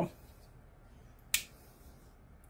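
A single sharp click about halfway through: the Klein Tools Flickblade folding utility knife's blade snapping into its locked open position.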